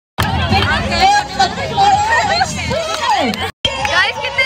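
Babble of many young women's voices talking and calling out over one another, with a brief drop-out to silence about three and a half seconds in.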